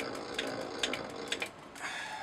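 Light, irregular metallic clicks over a faint steady background, from a small steel tool being handled in the bore of a brass steam-engine cylinder.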